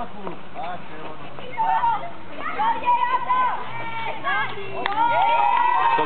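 Children shouting and calling out over one another during an outdoor game, getting busier after a couple of seconds, with one long held shout near the end.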